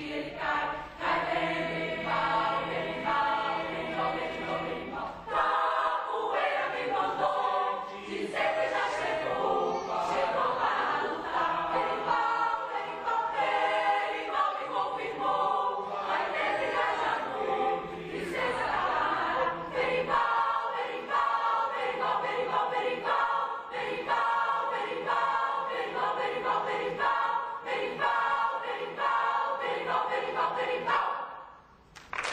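A large choir of many voices singing together in a sustained ensemble song.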